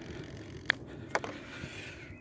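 Two light clicks about half a second apart over faint steady background noise, from handling the RC jet's open battery bay, with the electric ducted fan stopped.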